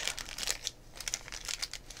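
Clear plastic packaging crinkling and rustling in the hands in a quick run of short crackles.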